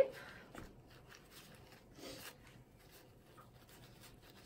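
Faint rubbing and scuffing of a paper lab wipe as a handheld refractometer is wiped dry.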